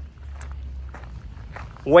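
Footsteps on a concrete walkway, a faint step about every half second, over a steady low wind rumble on the microphone.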